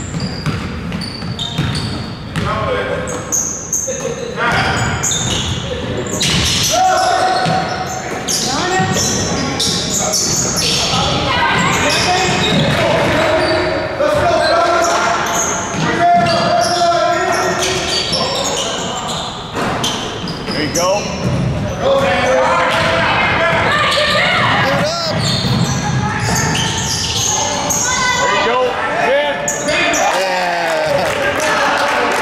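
Basketball game in a gymnasium: the ball bouncing on the hardwood court amid players' and spectators' shouts, echoing in the large hall.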